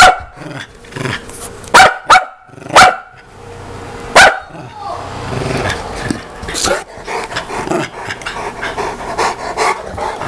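A Saint Bernard puppy and a small terrier-type dog at play: about five loud, sharp barks in the first four and a half seconds, then lower, continuous play growling with smaller barks.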